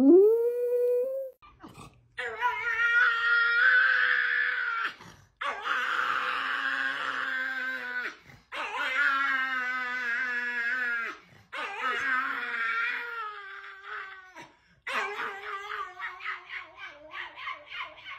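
A dog's howl rising and then held for about a second, then after a short break a pug howling: four long drawn-out howls of about three seconds each, followed near the end by a run of quick, broken howls.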